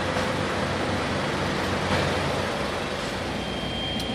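Steady mechanical drone of heavy trucks running nearby, with a faint thin high whine coming in near the end.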